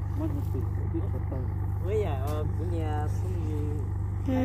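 Low, steady drone of a cargo boat's engine running, with a fast even pulse, while voices talk quietly over it.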